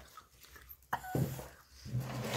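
Low, short nonverbal vocal sounds, like a closed-mouth hum or grunt: one about a second in, and another starting near the end.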